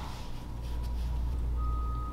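A steady low hum with a high electronic beep, a single clean tone, starting about one and a half seconds in; a quieter, slightly lower tone is heard in the first second.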